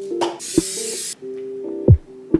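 A spray can, most likely cooking oil spray onto a frying pan, hissing in one burst of about a second that cuts off suddenly, over background music with a deep, steady beat.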